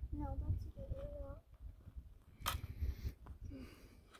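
A high, distant voice calling briefly in the first second and a half, then a single sharp click about two and a half seconds in, over a low rumble.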